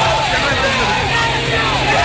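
Protesters shouting over a steady rushing noise from a police water cannon spraying the crowd, with the low hum of the cannon truck underneath.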